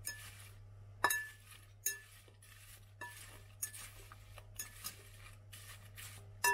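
Metal fork tossing chopped apple pieces in a glass mixing bowl: soft rustling of the fruit, broken by about half a dozen sharp, ringing clinks of the fork against the glass at uneven intervals.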